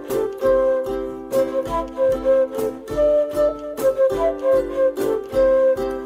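Transverse flute playing a melody over strummed ukulele chords.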